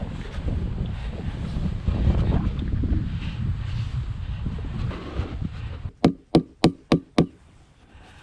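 Landscape edging blocks being shifted and set into place by hand, with low rustling and scraping. Near the end come five sharp knocks in quick succession, about three a second.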